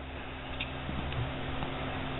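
Dial caliper being handled, its slide moved along the steel beam: a faint, steady rubbing hiss with a few light ticks over a low electrical hum.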